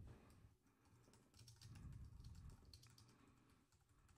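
Faint typing on a computer keyboard: an irregular run of quick key clicks.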